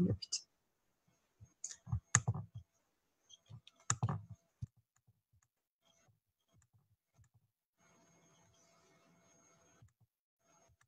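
A handful of short clicks and knocks over the first few seconds, then near silence with a faint hiss.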